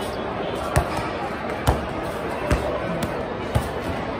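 A basketball bounced by hand on a hard tile floor: four separate bounces, a little under a second apart, over a steady murmur of background voices.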